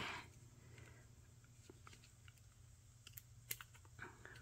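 Faint handling of a silicone mold being peeled off a cured resin frog casting: a few soft clicks and ticks against near silence, the sharpest about three and a half seconds in.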